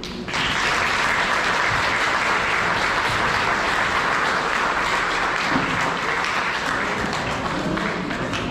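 A roomful of guests applauding, a dense steady clapping that starts a moment in.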